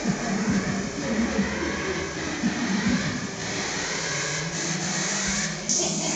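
Hardcore dance track in a quieter breakdown without the pounding kick drum, played over a club sound system and mixed with crowd noise. A hiss comes in near the end as the track builds back toward the beat.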